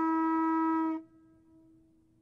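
Conch-shell trumpet (Hawaiian pū) blown in one long, steady note that cuts off about a second in, leaving a faint fading tail.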